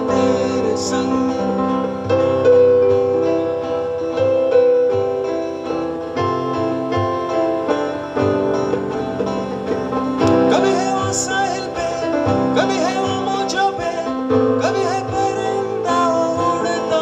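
Live Christian choir song played on keyboard and acoustic guitar, with voices singing.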